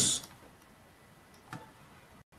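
The end of a spoken word, then near silence broken by a single brief click about one and a half seconds in.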